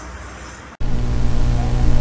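Faint background noise, then an abrupt cut about three-quarters of a second in to a louder, steady low electrical hum.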